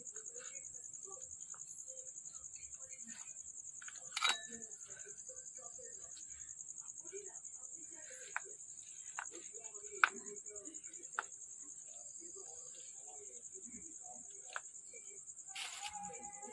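A steady high-pitched insect trill, like crickets, with soft squishing of hands mashing boiled potato in a steel plate. A few sharp clicks come through, the loudest about ten seconds in.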